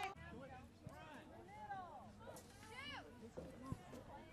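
Faint, distant shouts and calls of players and spectators across a soccer field, with a single sharp thud of a ball being kicked near the end.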